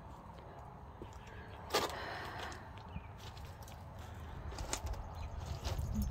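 Footsteps on a concrete path and then onto loose river rock, with a sharp knock about two seconds in and a few fainter clicks, over a steady low rumble.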